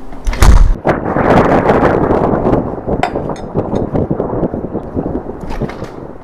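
A heavy thud about half a second in, then several seconds of rustling, clattering noise broken by scattered sharp clicks and knocks.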